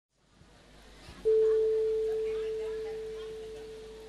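A single clear, pure musical note struck about a second in, ringing and slowly fading away, over faint background chatter.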